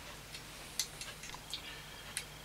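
A few faint, irregular light clicks, about five in two seconds, from hands and thread working at a fly-tying vise while half hitches are tied to finish a fly, over a low steady hum.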